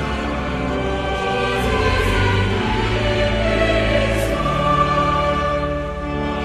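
A choir singing sustained chords that shift slowly from one to the next.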